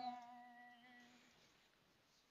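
The end of a woman's sung phrase in a Red Dao folk song: one held note fading out a little over a second in, then near silence.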